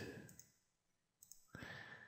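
Near silence with a faint computer mouse click about a second in, then a faint hiss near the end.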